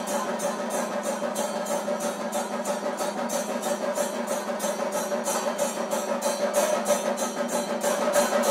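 Chenda melam: Kerala chenda drums beaten with sticks alongside small hand cymbals, playing a dense, steady rhythm with cymbal strokes about four times a second.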